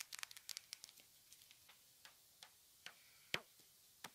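Faint, sparse clicks and crackles of small objects being handled: a quick run of soft ticks in the first second, then a few scattered ones, the sharpest about three and a half seconds in.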